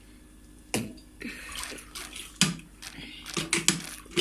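Citrus juice running and dripping from a lever-press juicer into a plastic cup, over a faint hiss, with sharp knocks and clicks of hard parts: one about a second in, a louder one around two and a half seconds, and a quick cluster near the end.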